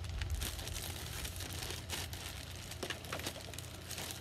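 Tissue paper crinkling and rustling as hands rummage through a shopping bag, a run of irregular crackles.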